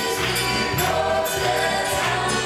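Live gospel worship music: a small band with guitar and drums, voices singing along and a steady jingling beat on top.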